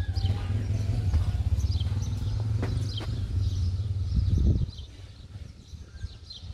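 Low, gusty rumble of wind on the microphone that drops away about four and a half seconds in, with faint bird chirps above it.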